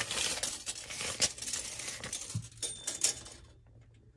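A steel tape measure's blade being pulled out of its case in gloved hands: a dense rattling scrape with a few sharper clicks, stopping about three and a half seconds in.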